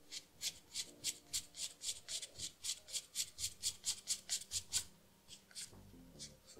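Sandpaper rubbed by hand over dried leather filler on a leather sneaker heel, smoothing a filled scratch flush, in quick even back-and-forth strokes, about four a second. The strokes stop about five seconds in.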